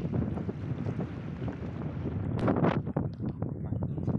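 Wind buffeting a phone's microphone, with crackling rustles as the phone is handled and turned, the loudest about two and a half seconds in.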